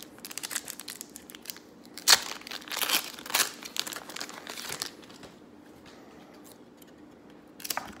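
A shiny foil trading-card pack wrapper being torn open and crinkled by hand, a dense crackle for about five seconds with the loudest sharp tear about two seconds in. It goes quiet, then a brief rustle near the end.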